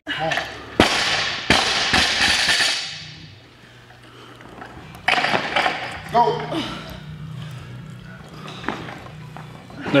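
A loaded barbell with bumper plates dropped from overhead onto the gym floor: a sharp impact about a second in, then a second hit and a clattering crash that fades over the next couple of seconds. Music plays underneath throughout.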